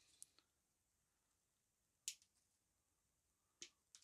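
Near silence broken by two sharp small clicks, about two seconds in and shortly before the end, from a thin brass photoetch fret being handled and folded by gloved hands.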